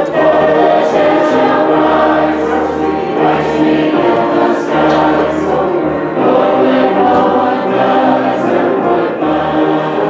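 Choral singing with instrumental accompaniment, with held low bass notes that change every second or so.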